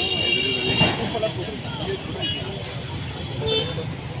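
High-pitched vehicle horn toots: one long toot in the first second, then two short ones a little after two seconds and about three and a half seconds in, over the talk of a group of people.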